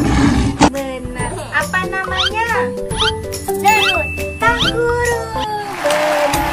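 Lion roar sound effect right at the start, followed by a music track with melody lines and a singing voice with gliding pitches. A burst of applause sound effect comes in near the end.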